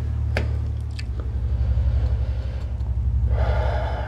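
A person taking a sharp breath near the end, over a low steady hum, with one click early on.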